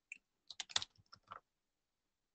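Computer keyboard being typed on: a quick run of about half a dozen short keystrokes as digits of a card number are entered, most of them bunched together in the first second and a half.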